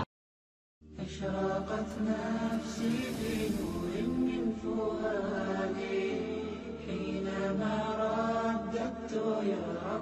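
Near-total silence for under a second, then a voice chanting in long, drawn-out melodic lines, with no instruments showing. A hissing sweep swells and fades about three seconds in.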